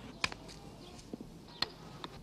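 Two sharp clacks about a second and a half apart, a wooden croquet mallet striking a croquet ball, over faint hiss.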